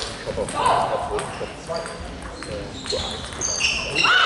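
Celluloid-type table tennis balls clicking off bats and tables, sharp short ticks at irregular intervals, with voices in the hall; the loudest voice comes about a second in.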